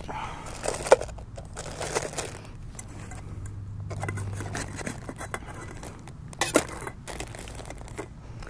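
A nesting metal camping cook set being packed away: pots, a bowl and a lid knocking together a few times, with plastic crinkling as the set goes back into its pouch.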